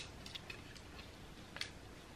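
Faint handling noise from a small ribbed baby romper being turned over in the hands: a few soft clicks, the clearest about one and a half seconds in.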